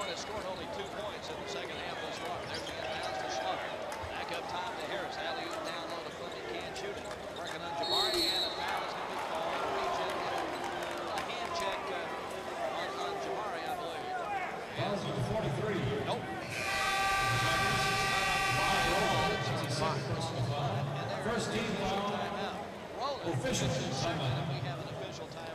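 Arena game sound from a college basketball game: crowd noise with a ball bouncing and sneakers squeaking on the hardwood, and a short whistle blast about eight seconds in. Later an arena horn sounds for about three seconds during the stoppage.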